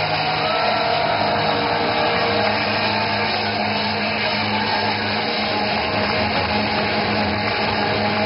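Loud live hard-rock band, distorted electric guitars and drums with cymbal wash, with no vocals. The sound is heavily saturated through a handheld camera's microphone, so it comes out as a dense, even roar.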